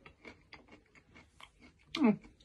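A person chewing crispy loaded fries close to the microphone: a run of faint soft clicks and crunches from the mouth, ending with a short falling vocal hum.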